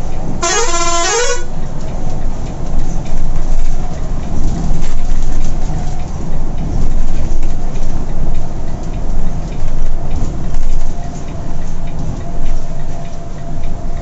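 Volvo B11R coach's diesel engine and road noise running as a steady low rumble, heard from the driver's cabin at highway speed. Near the start a vehicle horn sounds once for about a second, its pitch stepping up and down.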